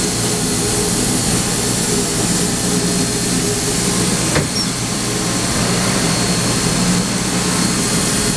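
Steady steam hiss and rumble in the cab of steam locomotive Wab 794, with a single sharp knock about halfway through.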